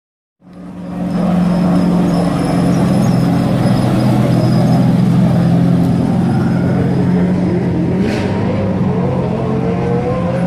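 NASCAR stock car's V8 engine running hard at a steady pitch as it passes, fading in over the first second. Near the end a second car's higher, wavering engine note comes up over it.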